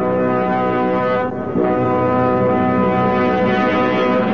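Brass fanfare of a radio serial's theme music: a long held chord, a brief break about a second and a half in, then a second long held chord.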